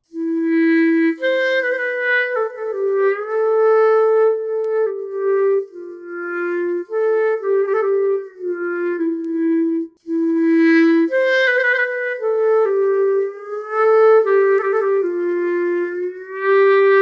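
SWAM Clarinet software instrument playing a legato melody, its volume shaped by breath blown into an Akai electronic wind controller used as a breath controller. Several notes slide smoothly into the next. It comes in two phrases with a brief break about ten seconds in.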